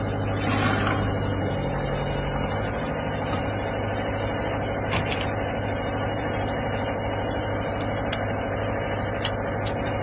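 Concrete mixer truck's diesel engine idling with a steady low hum. A few light clicks sound in the second half, as the clamps on a pressure air meter's lid are fastened.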